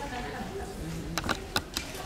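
Footsteps of hard-soled shoes on a stage, four or so sharp steps in the second half, over low voices.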